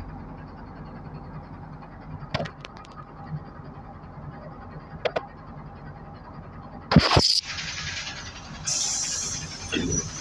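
NefAZ 5299 city bus with steady engine and running noise, and a few light knocks. About seven seconds in comes a loud sharp clatter, followed by a hiss that carries on to the end.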